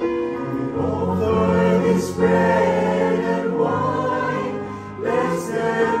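A mixed church choir singing a hymn in sustained phrases, swelling about a second in and easing off briefly near the end before the next phrase.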